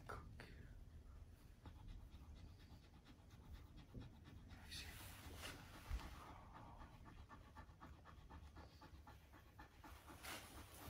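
A dog panting softly in a quick, even rhythm.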